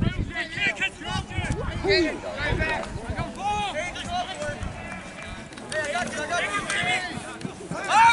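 Several voices of lacrosse players and spectators shouting and calling out during play, overlapping short calls, with one louder shout at the very end.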